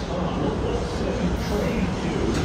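R188 subway train on the elevated 7 line, its propulsion and running gear giving a steady rumble with a low hum.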